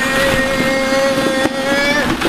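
A long held tone, rising slightly in pitch, over the rattle of plastic ball-pit balls being dug through; the tone cuts off at the end.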